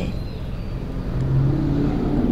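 Steady low background rumble of outdoor ambience, with a faint low hum rising in the second half.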